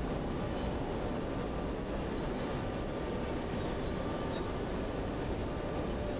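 Steady background noise of an industrial building: an even low rumble and hiss with faint steady hum tones, without any distinct knocks or events.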